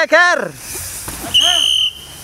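Spectators shouting "Ayo!" to cheer on a downhill mountain biker: one loud call at the start and a second, softer one about 1.4 s in, with a short, steady, high whistle blast over the second call.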